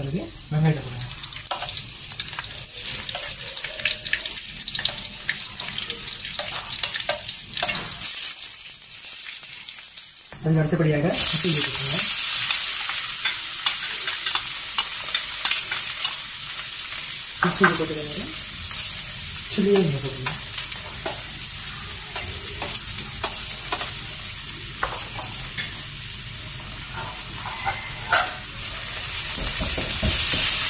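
Oil sizzling in a wok as minced garlic and then diced mixed vegetables fry, with a spatula scraping and tapping against the pan. The sizzle turns louder and brighter about eleven seconds in.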